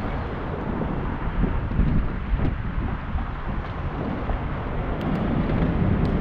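Wind rushing over the microphone of a camera riding on a moving bicycle, an even low rumble, with city street traffic mixed in.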